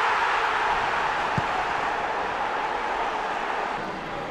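Football stadium crowd roaring as a goal goes in, loudest at the start and slowly dying away.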